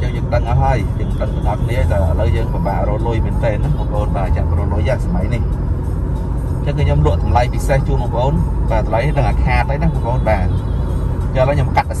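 A man talking steadily while driving, heard inside the cabin of a moving Toyota Fortuner over the low drone of its engine and tyres on the road.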